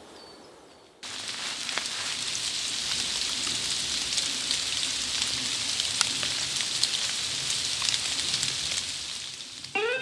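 Light rain pattering on the leaves of the forest canopy: a dense hiss of small drops with scattered louder taps, coming in suddenly about a second in and fading just before the end. The rain is heard overhead but does not come through to wet the ground below.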